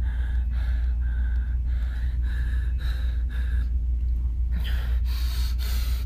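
A person breathing in quick, repeated gasps, about two a second, close to the microphone, over a steady low rumble of wind on the microphone. A burst of hiss comes in near the end.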